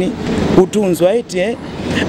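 A person speaking in a continuous voice. A short rush of noise comes at the very start.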